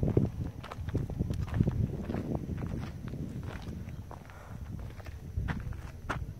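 Footsteps on dry, crusted desert sand as someone walks around with a handheld camera. The steps come irregularly over a low background rumble.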